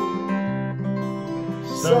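Two acoustic guitars playing together, chords ringing and slowly fading, then a fresh strum near the end.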